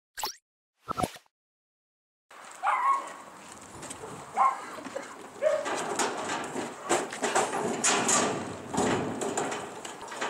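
Two brief sounds at the very start, then a dog barking a few times and the clatter and knocks of a corrugated sheet-metal fence as people climb over it.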